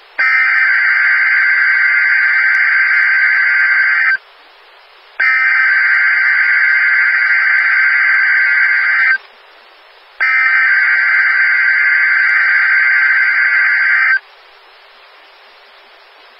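Emergency Alert System (SAME) header data tones from a NOAA Weather Radio broadcast, opening a Required Weekly Test: three loud, buzzing bursts of about four seconds each, about a second apart, with radio hiss in the gaps.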